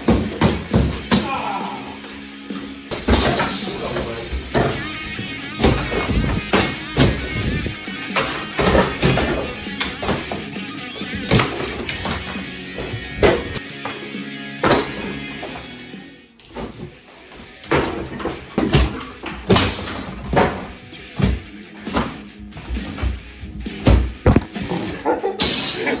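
A hammer repeatedly striking and breaking through drywall in irregular sharp blows, over background music.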